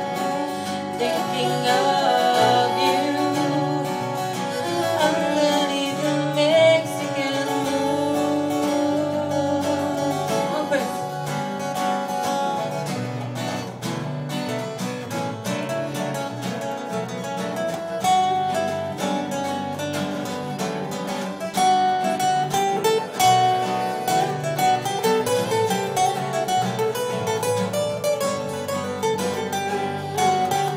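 Live acoustic band playing an instrumental passage: fiddle melody over strummed acoustic guitars and double bass.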